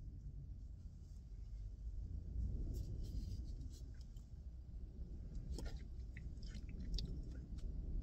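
Quiet mouth sounds of coffee being sipped from a travel mug: faint clicks and slurps, most noticeable in the second half, over a low steady rumble.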